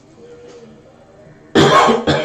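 A man coughing once, loud and sudden, near the end, into his fist.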